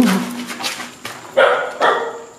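A dog barking: a few short, sharp barks in quick succession, the loudest about one and a half seconds in and just before the end.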